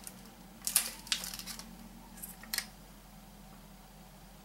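Thin plastic chocolate tray crinkling as it is handled, in a cluster of short crackles about a second in and two more a little after two seconds.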